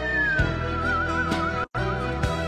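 Whistled melody over soft instrumental backing music: a held note slides down, then wavers in a quick vibrato. All sound cuts out for a split second near the end.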